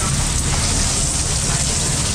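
Steady rain pouring down, a loud, even hiss that does not let up.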